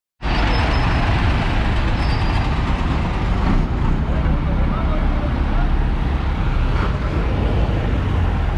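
Busy street traffic dominated by the low, steady running of a diesel chicken bus (a converted school bus) close by, with faint voices in the background.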